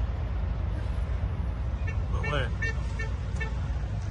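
Steady low rumble of an idling semi-truck diesel engine, with a few faint ticks between about two and three and a half seconds in.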